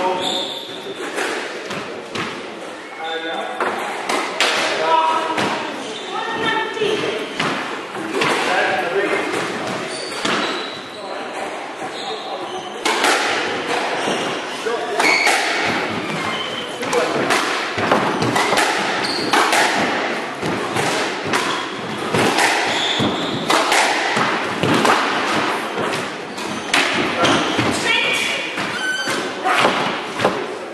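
A squash rally: the ball being struck by rackets and thudding against the court walls, in quick, irregular succession, with voices in the background.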